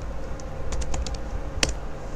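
Computer keyboard being typed on, a few quick keystrokes followed by one louder keystroke about one and a half seconds in as the command is entered.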